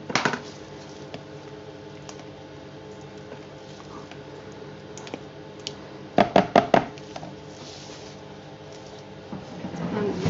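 A utensil knocking and tapping against the pot of soap batter while the fragrance is mixed in: one sharp knock at the start, then a quick run of about five ringing taps a little past halfway, over a steady faint low hum.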